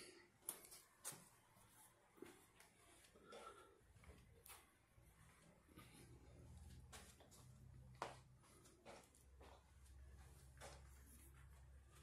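Near silence: room tone with a few faint clicks and a low hum from about halfway through.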